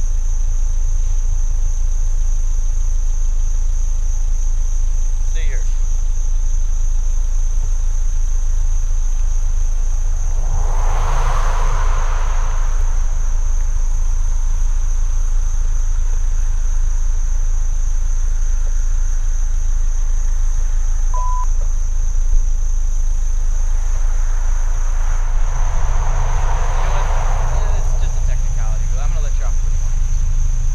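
Steady low rumble of an idling car heard from inside, with a constant high-pitched tone over it. Two passing cars each swell and fade, one about ten seconds in and another near the end, and a short electronic beep sounds about twenty-one seconds in.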